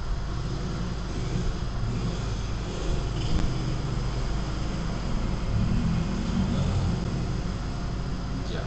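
Steady low rumbling background noise with a faint hiss, rising a little in level around the middle.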